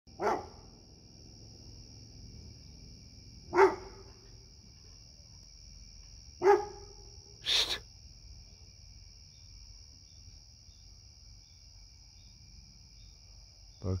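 A Labrador dog barking at the moon: four single barks a few seconds apart, the last one sharper and higher.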